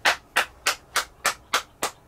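One person clapping hands, seven quick claps at a steady pace of about three a second.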